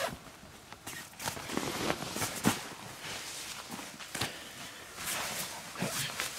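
Footsteps and rustling on the ground, with irregular short knocks and scrapes as debris is handled and lifted.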